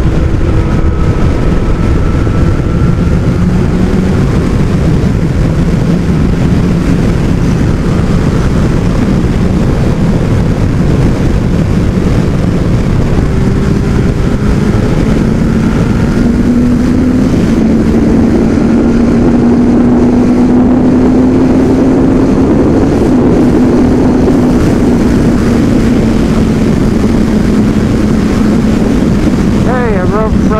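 Kawasaki ZX12R's inline-four engine running at road speed under a heavy rush of wind over the microphone. The engine note climbs gently about halfway through, then eases back.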